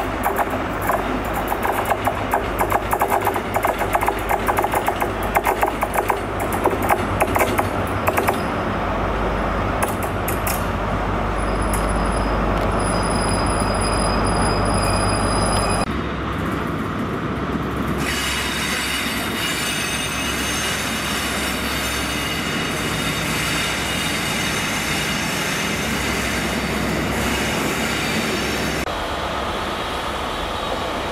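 An HST diesel power car draws its train slowly round a curve into the station, wheels clicking over rail joints under a low engine hum, with a high, steady wheel squeal for a few seconds before the sound cuts away. After that, a diesel passenger train runs along the platform.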